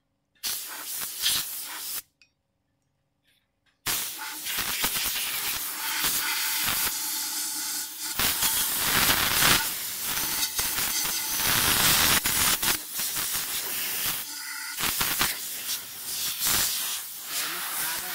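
Homemade wash pump's trigger spray gun hissing as pressurised water jets out. The spray sounds briefly, stops for about two seconds, then runs on with uneven surges and a short break near the end.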